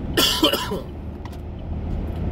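A man's single harsh cough, about a quarter second in and lasting about half a second, from someone who is still not feeling well. Under it is the steady low rumble of the car cabin on the move.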